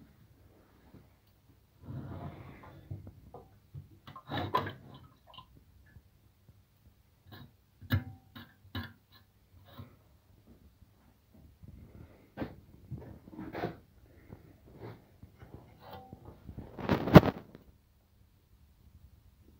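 Scattered handling noises: irregular knocks, clicks and rustles, with a louder rushing burst near the end.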